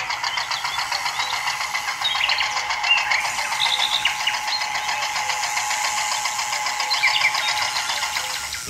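Small electric motor and gearbox of a DIY model tractor running as it drives, a steady high-pitched whine with rapid even ticking.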